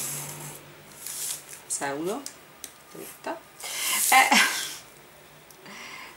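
A pencil drawn along a ruler on baking paper, scratching in a few short strokes, the loudest about four seconds in.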